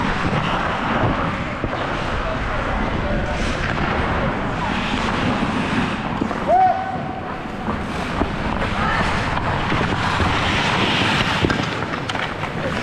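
Ice hockey play heard from a helmet-mounted camera: a steady rush of skate blades on the ice and air noise on the microphone, with indistinct player voices echoing in the rink, including a short call about halfway through.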